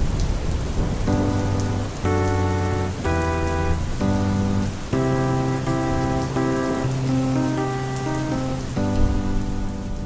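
Steady rain falling, with a keyboard playing a slow series of sustained chords over it from about a second in, the chord changing roughly once a second.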